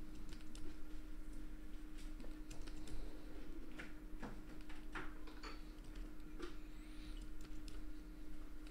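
Computer keyboard keys clicking at irregular intervals, with a faint steady hum underneath.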